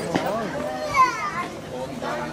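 People's voices chatting, with a child's high-pitched voice, the loudest sound, about a second in.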